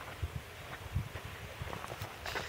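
Faint outdoor ambience: a low, uneven rumble of wind on the microphone.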